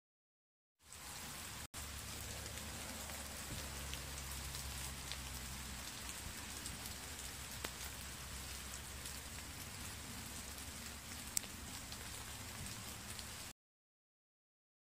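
Rain falling on foliage: a steady patter with scattered sharper drop ticks. It starts about a second in and cuts off suddenly near the end.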